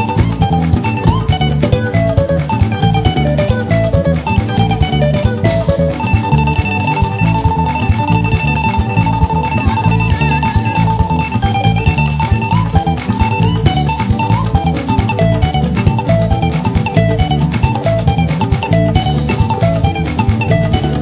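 Upbeat instrumental praise dance music with guitar and drum kit over a fast, steady beat; a long held high note sounds from about six to eleven seconds in.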